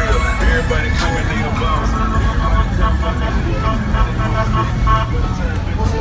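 Slab cars on swangas rolling slowly past, mixed with music that has a heavy bass and with people's voices.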